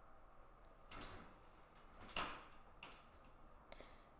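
Near silence broken by a few faint knocks and clicks from handling in the kitchen, the loudest about two seconds in.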